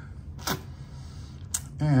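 Two camera shutter clicks, about a second apart.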